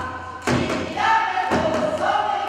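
Korean buk barrel drums struck in a steady beat, with a group of voices singing together in unison from about a second in.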